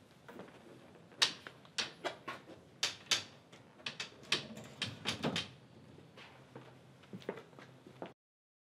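Rifles being handled on a wooden gun-cabinet rack: a quick, irregular run of sharp knocks and clicks of wood and metal, thinning out after about five seconds.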